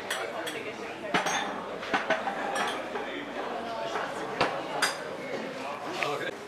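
Drinking glasses and crockery clinking as they are set into a plastic dishwasher rack. There are several sharp, scattered clinks over people talking.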